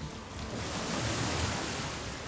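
Ocean surf: a wave rushing in, swelling to a peak about a second in, then easing away.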